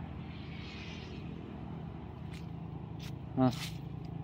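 Steady low background rumble outdoors, with a few faint clicks. A man gives a short 'à' near the end.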